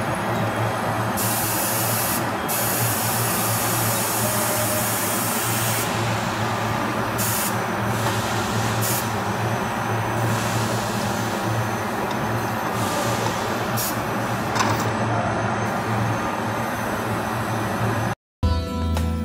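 Steady factory-floor machinery hum with a low drone, broken by repeated bursts of compressed-air hissing: a long one of several seconds near the start and several shorter ones of about a second later on.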